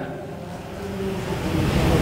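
Low rumbling noise that grows louder about a second in, with faint voices under it.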